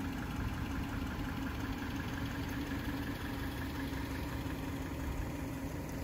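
A car engine running at a steady idle, an even low hum with no revving, while the tow strap is drawn tight.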